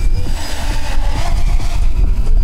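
Strong wind buffeting the microphone with a deep rumble, over the steady hum of a quadcopter's electric motors and propellers in flight.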